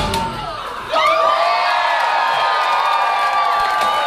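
A club audience cheering and whooping as a live rock song ends. A dip in the first second gives way to loud cheering with a long, wavering high tone held over it.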